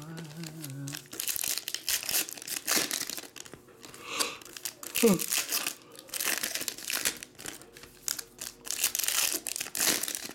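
Foil trading-card pack wrappers crinkling and tearing as packs are ripped open by hand, in a quick, irregular run of crackles. A brief falling tone cuts through about five seconds in.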